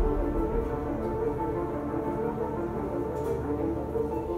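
Background music: soft instrumental music with long held tones at a steady level.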